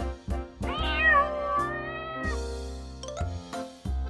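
A cat's single long, wavering meow, starting about a second in, over background music.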